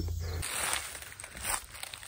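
Faint outdoor background with light rustling and a soft knock about a second and a half in. A low hum cuts off suddenly just before it.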